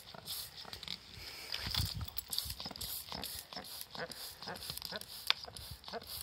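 Hand trigger spray bottle squirting liquid cleaner onto a muddy RC car chassis: a rapid, irregular series of short hissing squirts.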